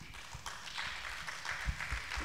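Audience applauding: a dense patter of many hands clapping, starting at once and keeping up.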